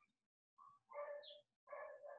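A dog barking faintly in the background: a few short barks in the second half.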